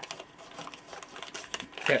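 Bill acceptor of an 8-liner slot machine running its feed mechanism as a crumpled paper bill is pushed into it, a bill it will not take.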